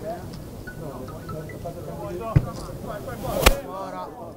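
Spectators at a rugby match talking and calling out, with two sharp knocks, one about two and a half seconds in and a louder one about three and a half seconds in.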